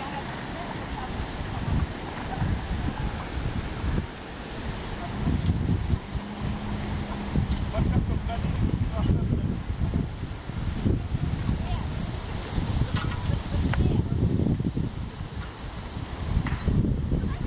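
Wind buffeting the microphone in uneven gusts, a low rumble that comes and goes, with faint voices of people in the background.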